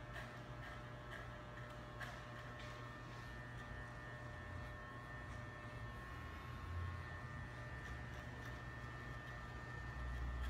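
Corded electric hair clipper running with a steady buzz as it cuts hair, with a few faint clicks.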